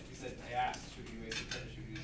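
Classroom background: indistinct low voices with a few light clinks and knocks of small objects, the sharpest near the middle.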